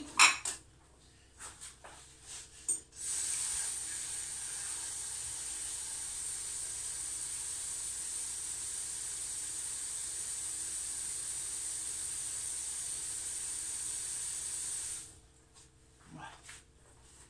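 Kitchen tap running into a stainless steel pot of meat and vegetables, filling it with water: a steady hiss for about twelve seconds that stops near the end. A few clinks of the pot being handled come in the first seconds.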